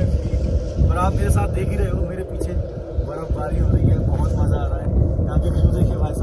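Wind buffeting the camera microphone, a loud, gusty low rumble, with a man's voice heard in short snatches over it.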